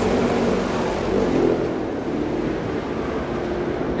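NASCAR stock cars' V8 engines droning steadily under a wash of rushing track noise as the field runs past a crash scene.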